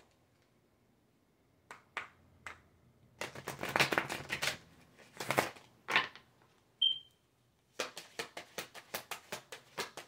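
A deck of oracle cards being shuffled by hand: a few separate snaps, then stretches of dense card clatter, and near the end a quick run of card flicks about four or five a second.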